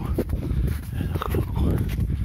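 A person walking through deep snow and breathing hard, with short breath and voice sounds over a steady low rumble on the microphone.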